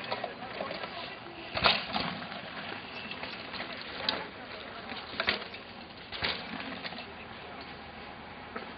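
Downhill mountain bike descending a rocky trail: tyres and frame rattling over stones, with a sharp knock about one and a half seconds in and several lighter knocks over the next few seconds.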